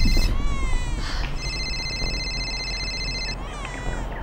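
Smartphone ringtone for an incoming call: a chord of high electronic tones held steady, then broken by quick sliding tones, the pattern sounding twice.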